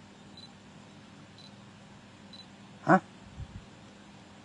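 A pause in a man's talk with only faint background hiss, broken about three seconds in by one short spoken 'ha' from the man.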